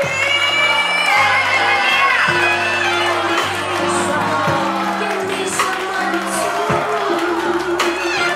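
A live band plays with a woman singing; she holds a long note in the first two seconds over steady bass notes. An audience cheers and whoops over the music.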